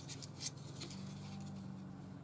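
Faint rustling and a few light clicks of hands handling a paper piece and a plastic glue bottle. A low steady hum comes in about a second in.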